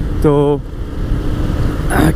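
Motorcycle riding at road speed: a steady engine hum under a loud rush of wind on a helmet-mounted action camera's microphone.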